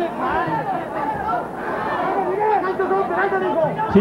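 Voices talking over general crowd chatter.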